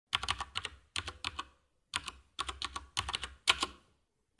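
Keyboard-typing sound effect: sharp key clicks in quick runs of a few strokes each, with short pauses between the runs.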